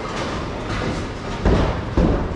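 Bowling centre din: a steady low rumble of bowling balls rolling on the lanes, with a couple of heavy thuds near the end.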